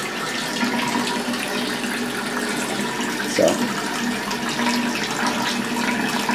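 Water running steadily from a handheld shower wand into a bathtub.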